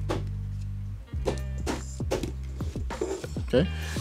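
Background music with a steady low bass, over which a handful of short, sharp clicks of playing-card packets being cut and dropped onto a table as a deck is run through a triple false cut.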